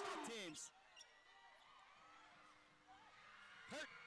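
Basketball game broadcast audio: arena crowd noise and a commentator's voice stop abruptly about half a second in. Faint court sounds follow, then a short, sharp burst near the end.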